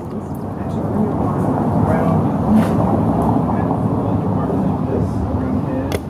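Low rumble of a passing vehicle, building to its loudest about halfway through and then easing off, with faint voices over it.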